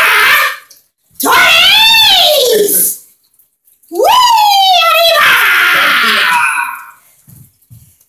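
Two long, loud, high-pitched shouts from one voice. The first rises and falls in pitch over about two seconds; the second, about four seconds in, slides down and trails off into a long hissing 'sss', like a drawn-out 'yasss'.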